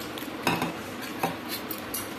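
Tableware clinking: a few light, separate knocks and clinks spread over two seconds.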